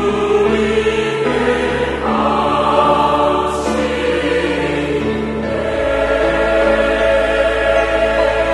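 Large mixed church choir singing a Korean anthem in sustained chords, with strings, woodwinds and piano accompanying. The chords change about two seconds in, and a deeper bass note enters near six seconds.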